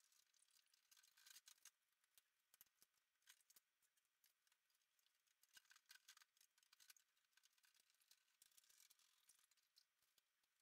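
Near silence: the sound track is all but muted.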